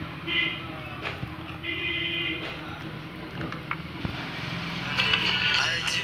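Two short electronic tones in the first couple of seconds, then music starting to play from a mobile phone about five seconds in, over a steady low hum. The phone is being hooked by aux lead to a repaired mini MP3 speaker to test it.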